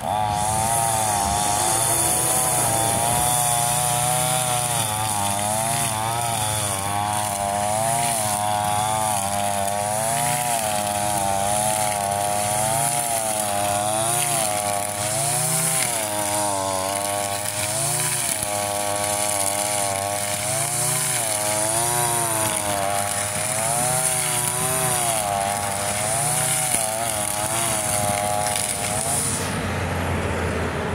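Shindaiwa 2620 string trimmer's two-stroke engine throttled up and running hard, its pitch dipping and rising every second or two as the spinning line cuts through tall grass under load.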